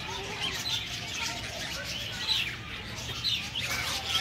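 A flock of budgerigars chattering, with many short chirps rising and falling in pitch overlapping one another.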